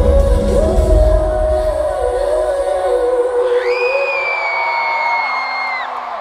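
Live pop song ending with a singer holding a long sustained note. The bass-heavy backing fades away about two seconds in, and high, drawn-out screams from the crowd join in over the second half.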